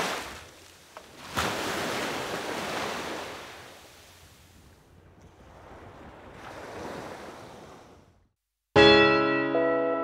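Sea waves washing up on a beach, the surf swelling and fading twice. Near the end the sound drops out for a moment, then a loud piano chord is struck and rings on.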